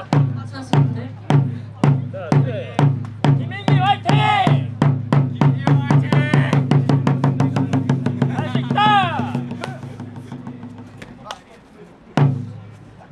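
Traditional Korean drums beating a steady rhythm that quickens about four seconds in, then fades away near the end, with a couple of shouts over it.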